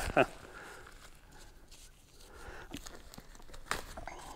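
A short laugh, then disposable gloves being peeled off greasy hands: soft crinkling and rustling, with a sharper click near the end.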